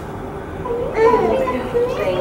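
Indistinct voices in the echoing hall of an indoor swimming pool, over a steady background murmur; the voices grow louder about halfway in.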